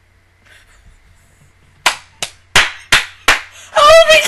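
Five loud, sharp hand strikes in quick succession, beginning a little before halfway, followed near the end by the start of excited, high-pitched laughter.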